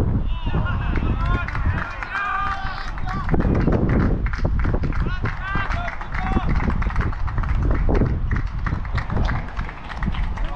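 Wind rumbling on a body-worn action camera's microphone, with the wearer's footsteps on grass. Shouted calls from players carry across the ground in the first few seconds and again about five seconds in.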